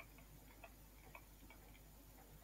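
Faint, irregular clicks of a stylus tapping on a pen tablet as digits are handwritten, against near silence.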